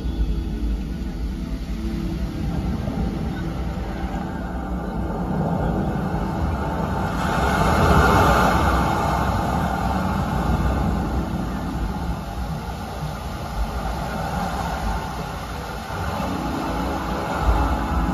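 Deep, steady rumbling from the show's sound system with faint music beneath it, swelling into a louder rushing about eight seconds in.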